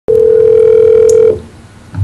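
A steady telephone line tone, held for just over a second and then cut off.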